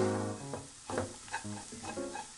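A wooden spatula stirring and scraping tiny dried anchovies and almonds around a nonstick frying pan, a few quick strokes during stir-frying. Light guitar background music plays throughout.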